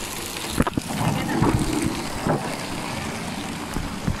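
Steady rushing noise of water running down a water-park slide, with wind buffeting the microphone as the rider slides down carrying the camera.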